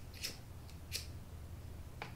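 Two short, sharp clicks about two thirds of a second apart, a cigarette lighter being struck.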